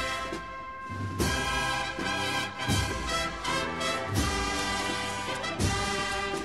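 Slow brass music with sustained chords and a drum strike about every second and a half.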